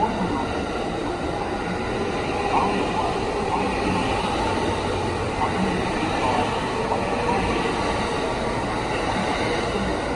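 Thunderbird limited express electric train accelerating out of the station as its cars pass close by: a steady running noise of wheels on rails and the train's running gear.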